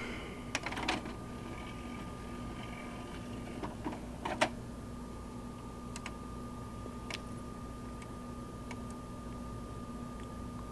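Front-panel buttons on an Aiwa DS-50 stereo clicking as they are pressed, several separate clicks spread over the seconds, with a faint mechanical whir of the three-disc CD changer for a couple of seconds near the start. A steady faint electrical hum lies underneath.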